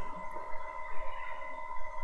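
A faint steady whine of a few fixed pitches, with low background noise and no speech.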